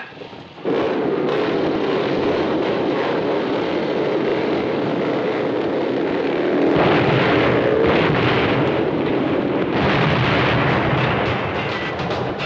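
A pack of motorcycle engines revving and running together as the bikes pull away. It starts abruptly about a second in and swells louder twice in the second half.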